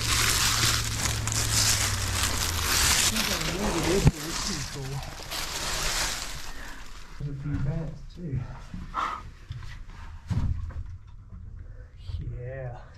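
Dry leaves and loose dirt rustling and scraping as a person slides on his back into a narrow mine opening, ending in a sharp knock about four seconds in. After that, quieter scuffing and clicks, with brief bits of voice.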